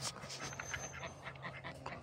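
A large dog panting faintly.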